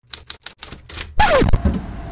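A person climbing into a small sports car's driver's seat: a quick run of light clicks, then about a second in a louder rustle and thump with a short falling squeak.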